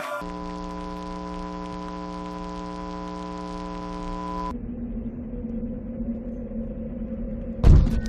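A steady buzzing hum that cuts off abruptly about four and a half seconds in, leaving a fainter hum over background noise, with a single loud thud near the end.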